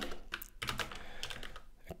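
Typing on a computer keyboard: a quick, uneven run of quiet keystrokes.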